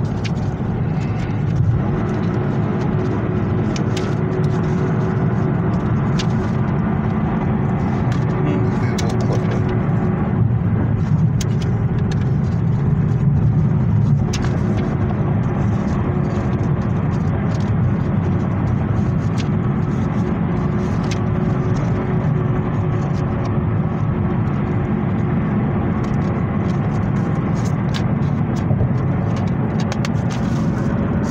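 Steady low rumble of a moving car heard from inside the cabin, engine and road noise together, with scattered light clicks of plastic DVD cases and paper inserts being handled.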